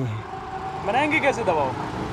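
Outdoor street background during a pause in speech: a low steady rumble, with a brief stretch of a quieter voice speaking about a second in.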